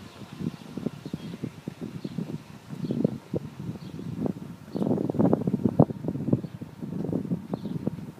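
Wind buffeting the phone's microphone in irregular gusts, a rough low rumble with many short thumps.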